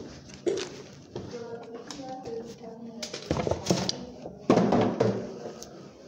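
Indistinct talking in a small room, with a few short knocks and clicks of handling.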